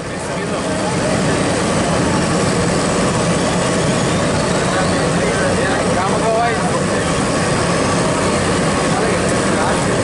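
Asphalt paver's diesel engine running steadily and loudly, a constant heavy machine drone that swells up over the first second.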